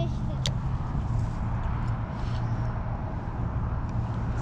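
A spinning rod is cast, with one sharp click about half a second in, over a steady low outdoor rumble with a constant low hum.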